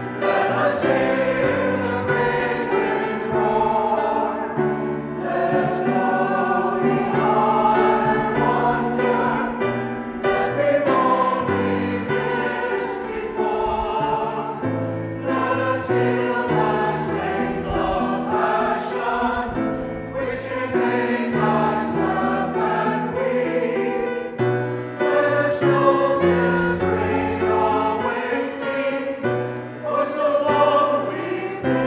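Mixed church choir singing a hymn-anthem in parts, with grand piano accompaniment.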